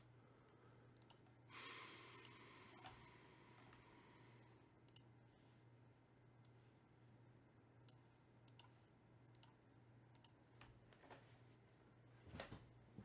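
Near silence: faint room tone with a steady low hum and scattered faint clicks. A soft hiss starts about a second and a half in and fades over the next two seconds.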